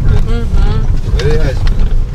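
Car cabin noise: a steady low rumble from the car driving along a rough dirt road, with brief speech over it.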